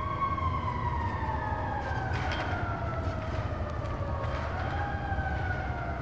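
Closing sound effect of a music video: a slow, wailing, siren-like tone that falls gradually in pitch, swells back up a little after four seconds in and falls again, over a steady low rumble, with a few faint clicks.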